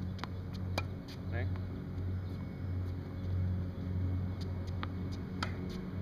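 Tennis balls popping off a racquet and bouncing on a hard court during backhand practice: several short sharp pops, the loudest about five and a half seconds in, over a steady low hum.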